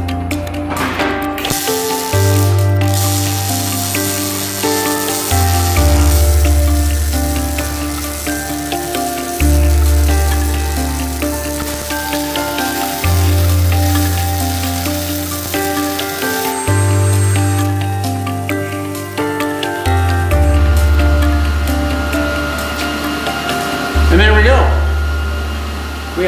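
Background music with a deep bass line changing every few seconds, mixed with the crackling sizzle of MIG welding on a steel truck frame for most of the first two thirds.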